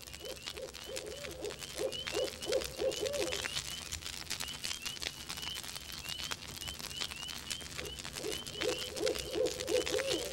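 Animal-call sound effects: a quick run of low hoots, about five a second, for the first three seconds and again near the end, over a steady string of short, high, upward chirps.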